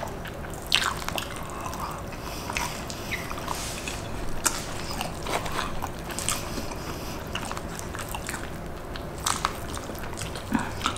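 Close-miked eating sounds: chewing and wet mouth smacks of loaded fries, with short irregular clicks of plastic forks against takeout containers.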